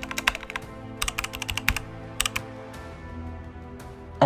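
Keyboard typing sound effect: short runs of quick clicks, four runs in the first two and a half seconds, over quiet background music with held notes.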